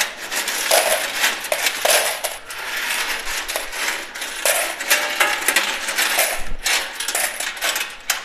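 Metal coins clinking and sliding against one another in rapid, continuous jingles as a hand gathers them in a coin pusher machine's payout tray.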